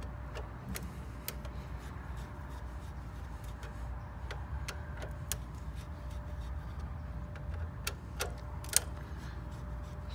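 Scattered short metallic clicks and taps of a hand tool on the wire terminal screws of a pool pump timer mechanism as the terminals are loosened, about ten irregular clicks with the sharpest near the end, over a steady low rumble.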